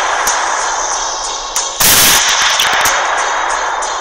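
A gunshot: one loud sudden shot about two seconds in that rings on as it dies away, over a continuous noisy crackling background.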